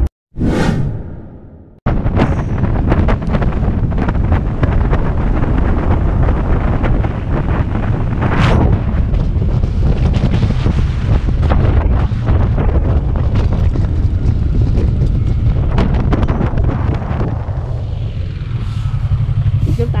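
A boom that fades out over about a second and a half, then heavy wind buffeting on the camera microphone of a moving motorcycle, with engine rumble underneath. The wind eases off near the end as the bike slows down.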